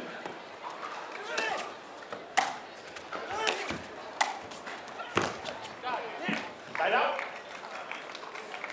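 Pickleball rally: paddles striking a hard plastic ball in sharp pops about a second or two apart.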